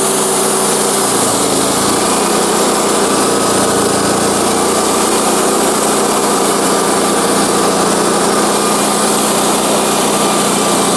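Wood-Mizer portable band sawmill running steadily under power feed, its engine working and the band blade cutting through a white pine log. The sound changes slightly about a second in as the blade enters the wood.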